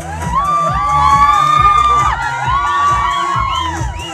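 A party crowd cheering and shouting, with several long, high-pitched cries held for a second or so, over loud dance music with a steady bass beat.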